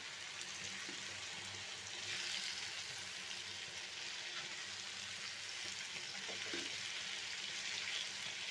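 Onion, tomato and potato masala sizzling steadily in oil in a nonstick frying pan while a silicone spatula stirs and presses it.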